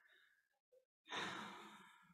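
A man's single soft sigh: one breath out about a second in, fading away, after near silence.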